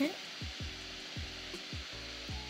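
A manual toothbrush scrubbing teeth, a soft steady hiss, under background music with a regular falling bass beat.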